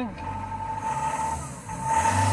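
2008 Peugeot Boxer's diesel engine, heard from inside the cab, running at idle and then revved, getting louder near the end as the revs rise toward about 2000 rpm.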